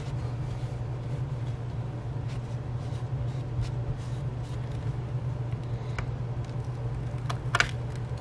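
A wipe rubbing ink off a clear acrylic stamp: faint scrubbing under a steady low hum, with a light click or two in the second half.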